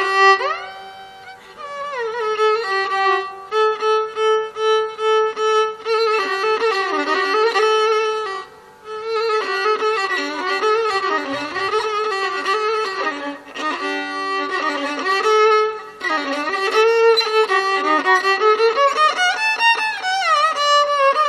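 Solo violin playing a Carnatic melodic passage: one continuous singing line full of sliding, oscillating ornaments (gamakas), with brief breaths between phrases. A faint steady drone sounds underneath.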